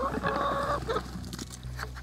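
A flock of domestic hens clucking and calling, with one long held call in the first second and softer clucks after it.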